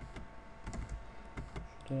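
Computer keyboard keystrokes and mouse clicks: a handful of separate sharp clicks as commands are entered and cancelled.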